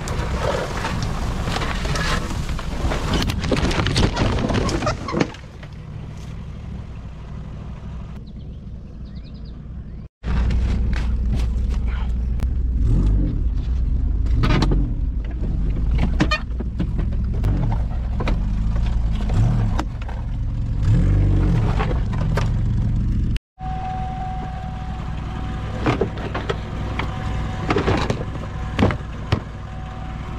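Car engine revving under load as the wrecked car strains to climb out of a brushy ditch, the revs rising and falling, with many sharp crackles and scrapes of brush and debris. The sound cuts out abruptly twice.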